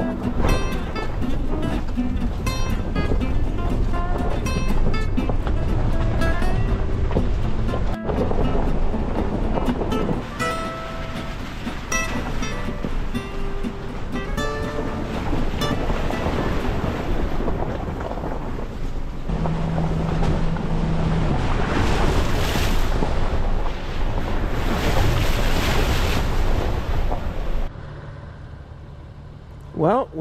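Background music with a clear melody over the first half. A steady rushing noise builds up under it in the second half, and the sound falls away to quiet about two seconds before the end.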